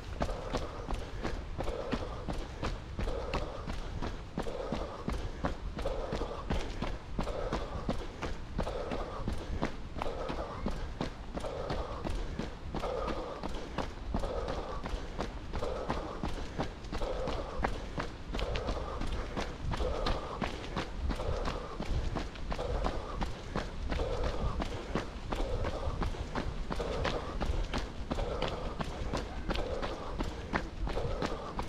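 A runner's footsteps on a packed dirt forest path, quick and regular, with heavy rhythmic breathing about once a second.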